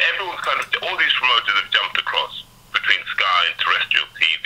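A man talking over a telephone line, his voice thin and narrow as a phone call sounds.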